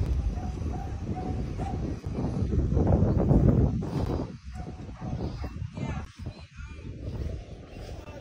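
Wind buffeting a phone microphone outdoors, a heavy low rumble that eases about halfway through, with a few short, faint pitched calls in the second half.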